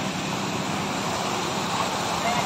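Steady rushing splash of water from ornamental park fountains, an even hiss with no breaks.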